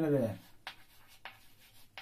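Chalk writing on a blackboard: a handful of faint, short scratches and taps of the chalk. A man's drawn-out word trails off at the very start.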